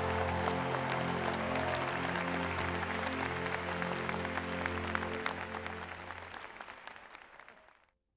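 Audience applauding over music of long held chords. Both fade out over the last two seconds.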